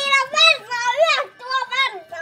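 A high-pitched child's voice speaking in short phrases.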